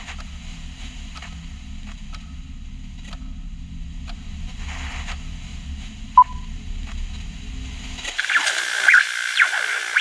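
Low steady electronic hum with faint scattered clicks and a single short beep a little after six seconds in. About eight seconds in the hum cuts out and louder radio static with warbling interference takes over, the sound of a news channel with no transmission.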